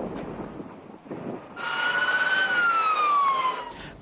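Police car siren wailing: one slow tone that climbs slightly, then glides down, starting about a second and a half in and stopping just before the end.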